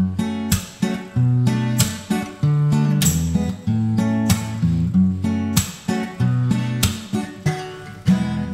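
Steel-string acoustic guitar strumming chords in a steady rhythm, with the bass note changing from chord to chord; there is no voice.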